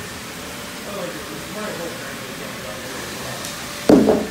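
Faint voices talking over a steady hiss of background noise, with one sharp knock just before the end.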